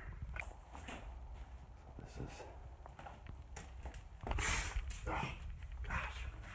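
Footsteps and scuffs with camera handling noise: scattered small knocks, then a louder rustling scuff about four seconds in.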